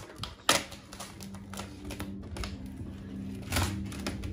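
Vinyl wrap film being lifted and stretched over a car hood, crackling with irregular small clicks as the adhesive lets go of the paint, with two louder snaps, about half a second in and near the end. A low steady hum comes in about a second in.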